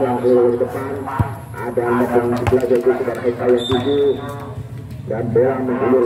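A man's voice chanting one word over and over in long held, sing-song notes, dropping lower for a moment about two-thirds through before picking up again.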